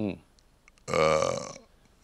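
A man's short falling 'mm', then about a second in a loud, rough, throaty vocal sound lasting about half a second, not a word.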